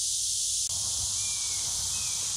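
Steady high-pitched insect chorus droning over a field, with a soft low rumble that picks up about a third of the way in.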